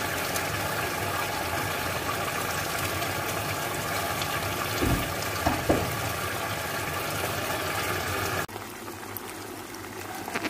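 A steady hiss with a faint hum, broken by a few soft low thumps about five seconds in. Near the end it cuts abruptly to the quieter sizzle of chicken frying in a pan.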